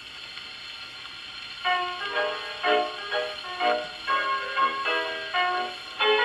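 A 78 rpm shellac record playing on an acoustic Victrola phonograph: steady surface hiss from the needle, then about a second and a half in, the record's piano introduction begins, with clear separate notes.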